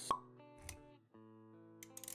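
Animated-intro sound effects over soft background music: a sharp plop just after the start, a short whoosh with a low thump about two-thirds of a second in, then held music tones after a brief drop-out.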